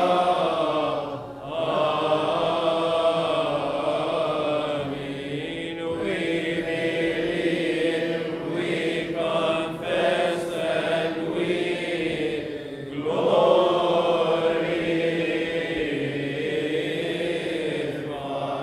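Coptic Orthodox liturgical chant: voices singing slow, drawn-out melismatic lines on held notes, with short breaths about a second in and again near thirteen seconds.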